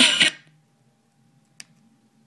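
Music playing from a SimplyVibe SG-S350P portable speaker cuts off suddenly about a third of a second in. Then there is near silence with a faint steady hum, broken by one sharp click about a second and a half in.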